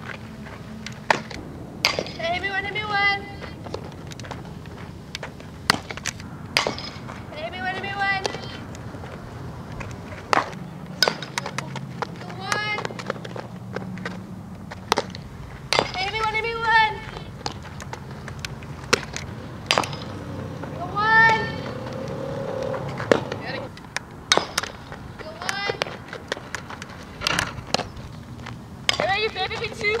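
Softball infield practice: sharp knocks of softballs being hit and smacking into leather gloves, repeated at irregular intervals. Between them come short, high-pitched calls, each lasting under a second, about six or seven times.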